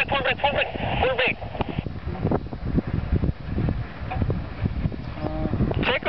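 A voice calling out briefly at the start, then wind buffeting the microphone: an irregular low rumble with gusts.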